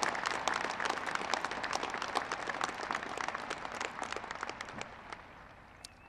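Large crowd applauding, the clapping fading away steadily and dying out just before speech resumes.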